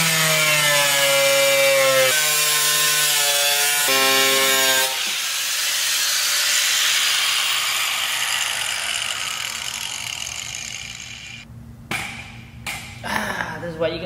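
Angle grinder cutting through the sheet metal of a car's engine bay: a loud motor whine with a hiss, shifting in pitch twice as the cut loads it. About five seconds in the whine stops and a whirr fades out over several seconds. A few knocks near the end.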